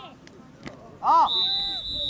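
A referee's whistle blown once, a steady high note held for about a second, starting just past the middle. It comes right after a short shout on the field.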